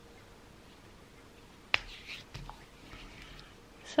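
Hands rubbing hand cream into the skin, a faint soft swishing, with one sharp click a little under two seconds in.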